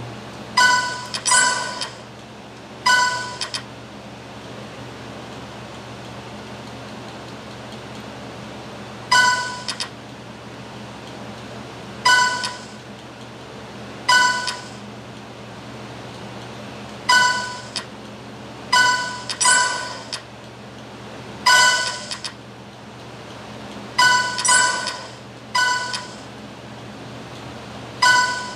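A short, bright, ringing chime-like tone sounds about a dozen times at uneven intervals, each ping under a second long and sometimes doubled, over a faint steady low hum.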